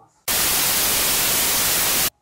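Loud, even TV-static hiss that cuts in suddenly a moment in and holds flat: a glitch-transition sound effect.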